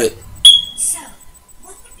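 A single short, high-pitched chirp about half a second in, with a sharp start that fades quickly.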